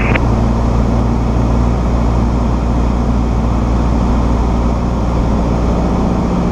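Cessna 172SP's four-cylinder Lycoming engine and propeller droning steadily, heard from inside the cockpit, with a constant rush of air over it.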